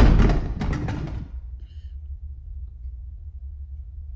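Movie soundtrack: a loud crash with a few sharp knocks as the handheld camera is knocked over, dying away within about a second. A low steady rumble follows.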